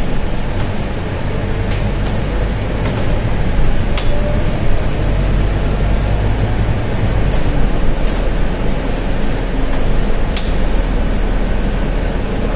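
Cabin noise of a Scania N320 city bus on the move: a steady low engine drone with road noise, the lowest part of the drone easing about seven seconds in. A few short sharp clicks sound along the way.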